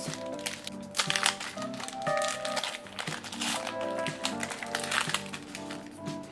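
Foil booster-pack wrapper crinkling and tearing as a Pokémon card pack is opened by hand, with a run of short crackles. Background music plays underneath.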